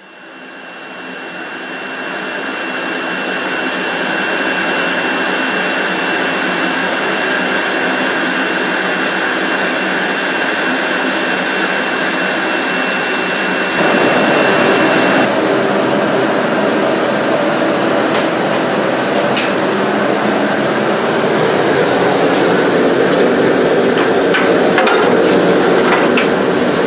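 A loud, steady rushing hiss from the shop equipment, fading in over the first few seconds and changing in tone about halfway through, with a few faint knocks near the end.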